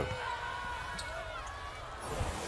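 Low basketball game sound: faint arena noise with thin, gliding squeaks and a single sharp ball bounce about halfway through.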